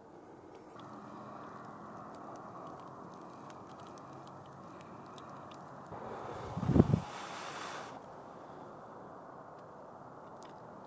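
Steady outdoor background noise with scattered small clicks. Between about six and eight seconds in comes a louder rustle with a few low thumps.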